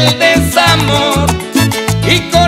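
Tropical salsa-style dance band playing an instrumental passage, with a driving bass rhythm under the melody and no singing.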